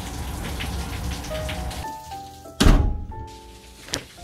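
Rain sound with background music of held notes that step from one pitch to another; about two and a half seconds in, a single loud thump.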